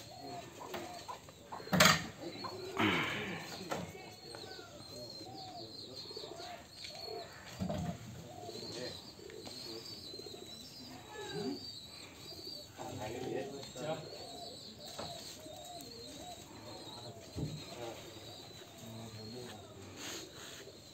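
Birds calling, with a high chirping above lower, repeated calls, and one sharp knock about two seconds in.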